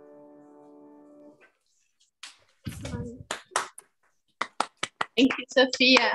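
Cello playing a held low bowed note that fades out about a second and a half in. After a short pause come a run of short clicks and brief snatches of speech.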